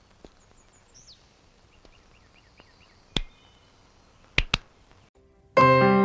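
Quiet film soundtrack with a few faint high chirps, then three sharp cracks: one a little past halfway and two close together about a second later. Near the end, keyboard music starts suddenly and is the loudest sound.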